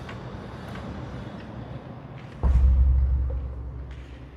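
Large aluminium-framed window being pushed open: a click from the frame about two and a half seconds in, then a low wind rumble on the microphone that starts suddenly and dies away.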